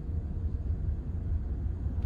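Steady low rumble of a Ford Fiesta's engine and running gear heard from inside the cabin, the car creeping along in first gear in queuing traffic.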